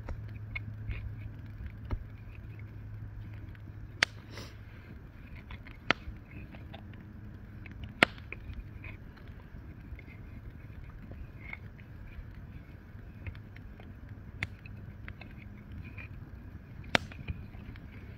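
Hands wrapping cord around a bundle of green wooden poles: quiet rubbing and handling, with about half a dozen sharp clicks as the poles knock together, the loudest about halfway through. A low steady hum sits under it and fades out about halfway.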